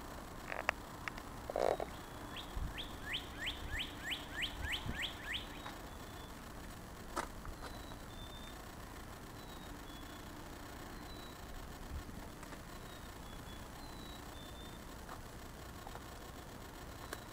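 A bird singing a run of about ten quick, downward-slurred whistled notes, about three a second, while another bird gives faint, thin high notes every couple of seconds. A few clicks and a brief thump sound near the start.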